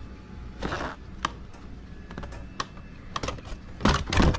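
Hard-plastic scale RC truck body and its clip-on body mounts being handled: scattered sharp plastic clicks, a brief rustle about half a second in, and a quicker run of clicks near the end.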